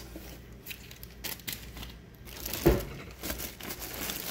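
Plastic-wrapped insulation liner of a cardboard meal-kit box crinkling and rustling as a hand rummages inside it, with a single louder dull thump about two and a half seconds in.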